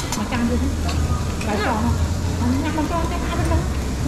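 Voices talking at a dining table over a steady low hum of restaurant ventilation.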